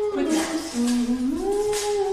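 A person humming long held notes. The hum holds one pitch, drops to a lower note around the middle, then slides back up and holds the first pitch again.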